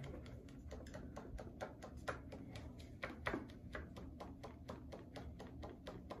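A handheld object waved quickly as a fan to dry a watering eye, giving a fast, regular run of light flapping taps, about five a second.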